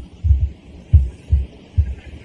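About five dull low thumps, irregularly spaced, over the faint hiss of an old lecture recording.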